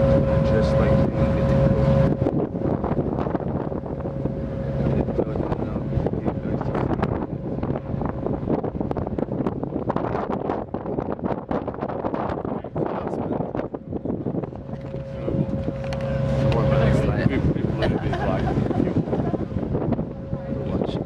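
A passenger boat's engine drones steadily while under way, mixed with wind buffeting the microphone. The engine's hum is strongest for the first couple of seconds, fades, then swells again about fifteen seconds in.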